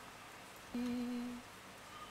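A person's short hummed note, held steady at one pitch for under a second, about three-quarters of a second in.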